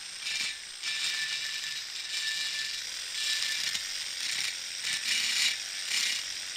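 Flexible-shaft rotary tool spinning a small burr against the port edges of a two-stroke cylinder bore, a high grinding buzz that comes and goes in short passes. The port edges are being lightly rolled, chamfered so the piston rings won't catch on them.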